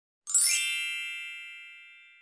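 A single bright chime sound effect for the intro title card. It is struck about a quarter second in, with a brief sparkling shimmer on top, and its several ringing tones fade away over the next second and a half.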